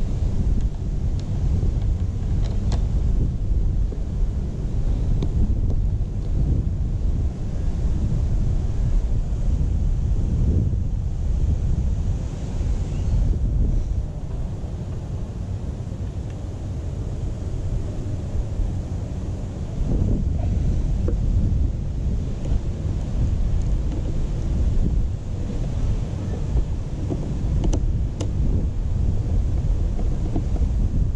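Wind buffeting the microphone: a gusty low rumble that eases off for a few seconds around the middle, with a few faint clicks.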